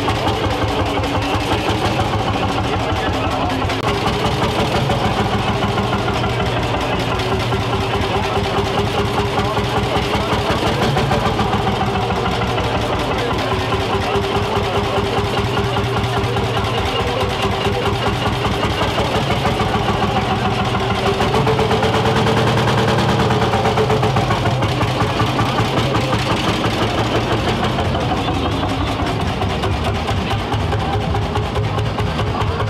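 Lanz Bulldog tractor's single-cylinder hot-bulb engine running with a rapid, even beat that holds steady throughout, swelling a little about two-thirds of the way in as the tractor drives off.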